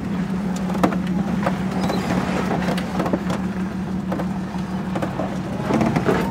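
Jeep engine running with a steady low drone as the vehicle crawls down a rough, rocky off-road trail, with scattered knocks and rattles from the rough ground and the vehicle.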